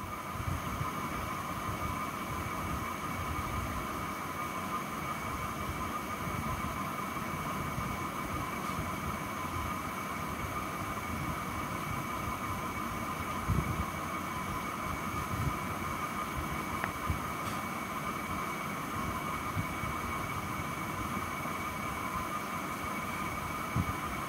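A steady background hum with a constant high whine over a low rumble, like a motor or fan running, with a faint knock about halfway through.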